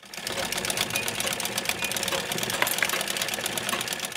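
Sewing machine running with a rapid, even clatter, starting abruptly.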